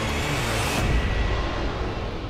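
Film-trailer sound design over a score: a rising whoosh that cuts off sharply just under a second in, then a deep boom, after which the mix fades.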